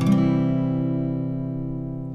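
An open C major chord strummed once on an acoustic guitar in standard tuning, ringing out and slowly fading.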